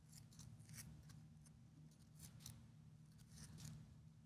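Faint, scattered clicks of computer keyboard keys being typed, over a low steady room hum.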